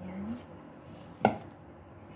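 A single sharp knock against a plate, with a brief ring, about a second in, as cookie dough is handled and set down on it.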